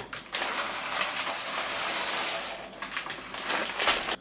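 Dried black-eyed beans poured from a plastic bag into a blender jug, a continuous patter of many small clicks as the beans hit the jug and the meal beneath them. It builds soon after the start and dies away just before the end as the pour stops.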